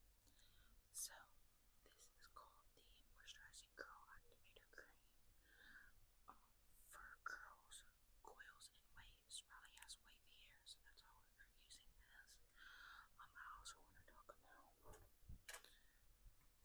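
A woman whispering softly, with hissy sibilants.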